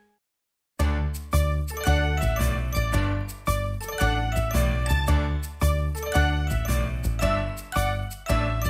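Near silence for under a second, then instrumental children's music starts: quick, evenly repeating struck notes that ring, over a steady beat, with no singing yet.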